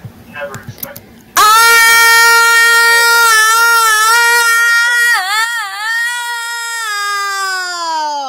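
A high-pitched voice crying out in one long, loud wail, starting about a second and a half in, wavering near the middle and sliding down in pitch as it fades at the end.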